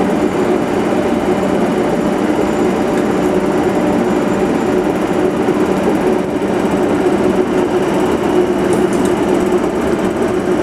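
Class 90 25 kV AC electric locomotive pulling slowly away under power: a loud, steady hum with a few held tones from its traction equipment.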